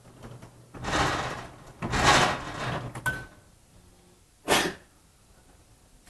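Three bursts of rustling and rubbing, clothing brushing a clip-on microphone as the wearer moves, with a short faint tone about three seconds in.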